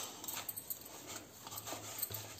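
Hands kneading a stiff flour dough in a stainless steel bowl: faint soft rubbing and pressing, with a few light ticks.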